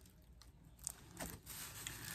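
Faint crinkling and light clicks from a plastic-packaged sticker sheet being handled.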